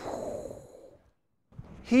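A man's sigh into the pulpit microphone: a short voiced start that falls in pitch, then a breathy exhale fading out within about a second.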